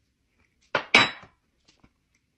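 A metal spoon clinks twice in quick succession in the middle, the second clink ringing briefly, followed by a couple of faint clicks.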